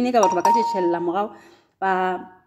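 A person speaking, with a brief steady high tone sounding under the voice near the start, then a short pause before the talk resumes.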